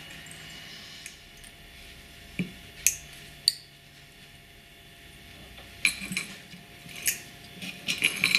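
Steel jewellery pliers and small silver jump rings clicking as the rings are bent closed: three sharp metallic ticks between two and a half and three and a half seconds in, then a looser run of small clicks near the end.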